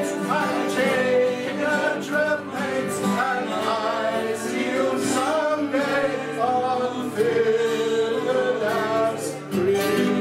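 Acoustic guitars strummed together in a live folk session, with singing over them.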